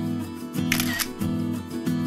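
Background music of strummed acoustic guitar, with a single camera-shutter click a little under a second in.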